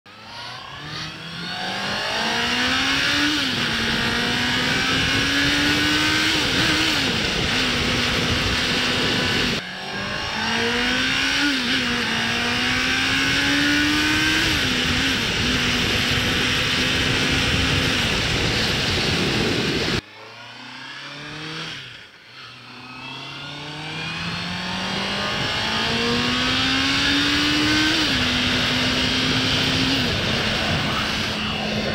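Honda CBR650R inline-four engine pulling hard through the gears, its pitch climbing and then dropping sharply at each upshift before settling into a steady cruise, with wind rushing past the rider's camera. This happens three times, the sound cutting abruptly about a third and two-thirds of the way through to a fresh run.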